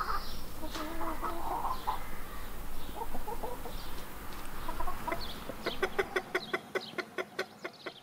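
Appenzeller Barthuhn chickens clucking softly, with a run of quick clicking sounds over the last couple of seconds.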